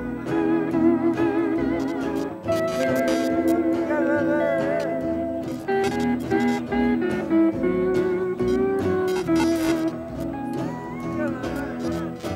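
Live country band playing an instrumental break, led by a steel guitar whose notes slide and bend over a rhythm guitar accompaniment.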